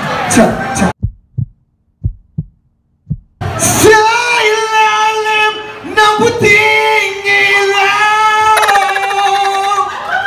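A man singing into a microphone through a PA system, holding long, steady notes. About a second in, the sound drops out for a couple of seconds except for a few short low thumps, then the singing picks up again with a long sustained line.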